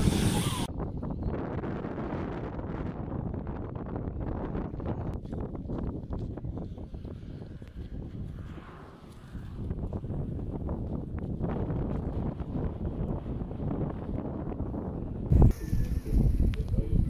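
Wind buffeting the microphone: a steady rough rush with a short lull about halfway through and a sudden louder burst near the end.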